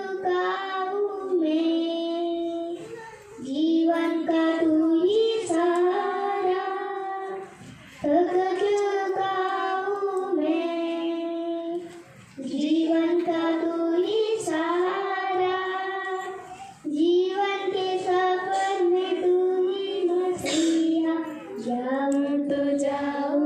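A young girl singing a Hindi devotional song solo into a microphone, without accompaniment, in phrases of about four to five seconds with held notes and short breaks for breath between them.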